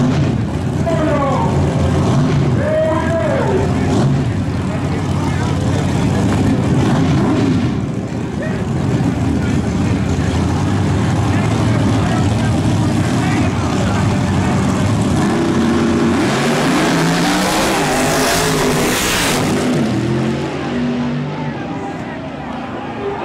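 Two drag race cars' engines running loud at the starting line, then launching down the strip about sixteen seconds in, a burst of noise followed by engine notes climbing in pitch as they pull away.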